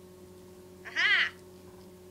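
A cat meowing once, a short call that rises and falls in pitch, about a second in.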